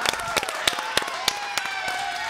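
Hand clapping from a few people: sharp, irregular claps throughout, with faint voices underneath.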